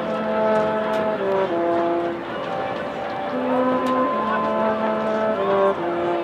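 High school marching band wind section, brass and woodwinds, playing a slow melody of long held notes, each about a second long.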